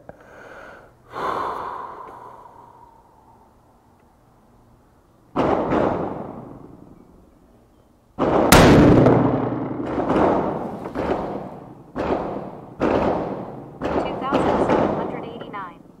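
Rifle shots at a shooting range, each with a long echoing tail: a couple of spaced shots early, then a loud shot about eight seconds in followed by a quick run of shots about one every second. Among them is the last shot of a five-shot group from a 6.5 PRC bolt-action rifle.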